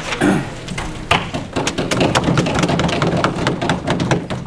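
Audience applause, a dense run of claps and knocks that builds from about a second in and keeps going.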